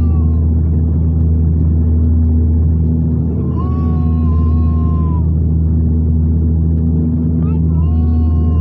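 Steady low drone of a turboprop airliner's engines and propellers heard inside the cabin on approach. About halfway through, a long held vocal note sounds over it for a second and a half.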